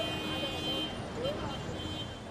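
City street traffic: cars and taxis running by in a steady wash of noise, with a few faint voices, fading down gradually.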